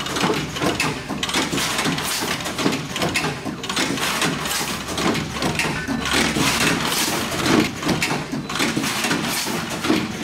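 Controls Engineering SB25 automatic book stacking and banding machine running: a continuous mechanical clatter of conveyors and stacker mechanisms, with many quick clicks and knocks.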